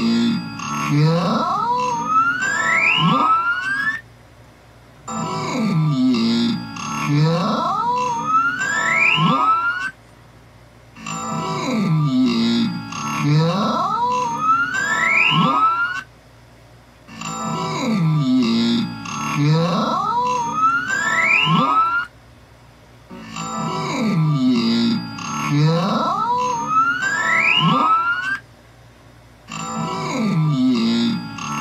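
A short stretch of children's TV soundtrack, voices and laughter over background music, played slowed down so the voices are drawn out and deepened, with rising swoops. The same stretch of about five seconds repeats five times, each time followed by a brief dip of about a second.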